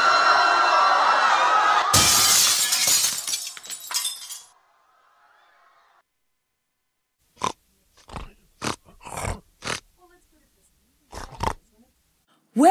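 Radio-comedy sound effects of a chaotic rush across a trading floor: a loud din of shouting and commotion, then a crash of shattering and breaking about two seconds in that dies away over the next two seconds. After a silence, a series of short separate noises comes near the end.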